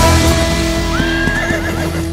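A country-pop dance track ends on a held chord that starts to fade. About a second in, a horse whinnies in a rising then wavering call lasting under a second.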